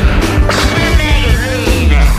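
Loud, raw blues-rock song: distorted guitar and drums with a heavy low end, and wavering, gliding high squeals over it in the second half.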